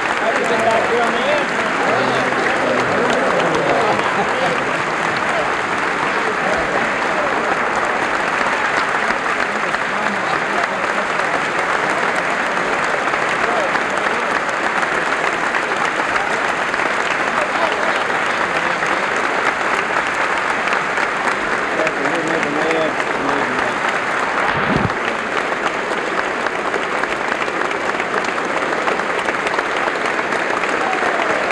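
Sustained applause from a large crowd of standing legislators, steady throughout, with voices calling out over the clapping.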